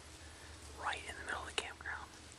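A person whispering a few words, starting just under a second in, with a sharp click partway through.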